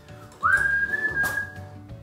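A single whistled note that slides quickly upward and is then held for just over a second, over faint background music.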